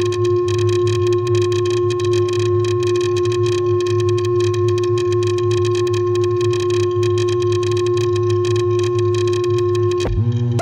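Eurorack modular synthesizer patch built on Mutable Instruments Stages, Tides and Marbles, holding a steady drone on a single pitch over a thick bass tone. A rapid, fine crackling flutter runs through it.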